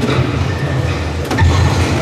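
Low, steady rumble of a busy hall's background noise, with a sharp knock about one and a half seconds in.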